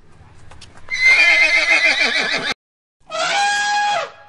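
A horse neighing: one long warbling whinny starting about a second in that cuts off abruptly, followed by another loud call near the end.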